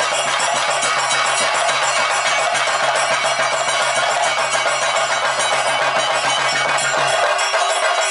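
Ritual percussion: dense, rapid drumming with ringing metal cymbals and bells, continuous and loud, over a steady low tone that drops out near the end.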